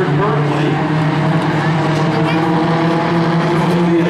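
Hornet-class dirt track race cars, small four-cylinder compacts, racing with their engines running steadily at a constant level.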